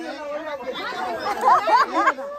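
Chatter of several women talking over each other, growing louder with raised voices in the second half.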